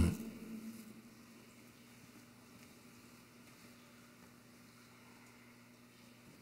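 Near silence: room tone with a faint steady low hum, after the last spoken word dies away in the first second.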